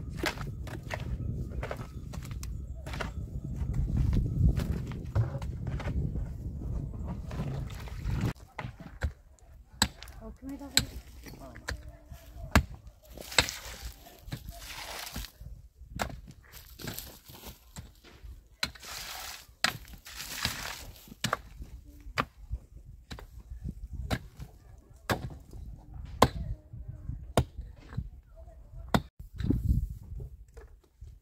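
Shovel working wet mud and stony earth: irregular scrapes and knocks of the blade, with a few longer scraping strokes in the middle. A low rumble fills the first several seconds.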